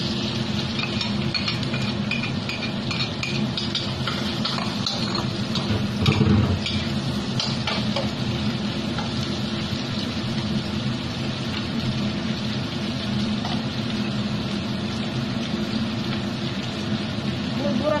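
Stir-frying in a steel wok: pork and wood ear mushrooms sizzling as a spatula scrapes and taps the pan, over a steady low hum. A louder thump about six seconds in.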